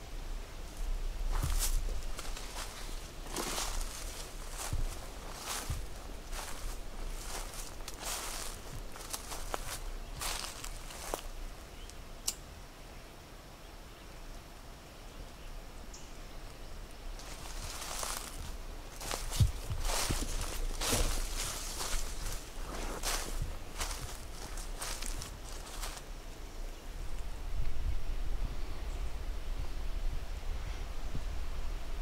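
Footsteps through dead leaves, sticks and brush on a forest floor, rustling and crunching in uneven strides, in two spells with a quieter lull in between.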